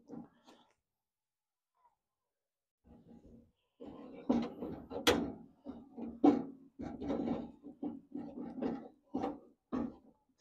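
Hands and a grease tube knocking and rubbing against the steel door and window mechanism while white lithium grease is worked onto the window's nylon roller: a quiet start, then a run of irregular short knocks and scrapes with one sharper click partway through.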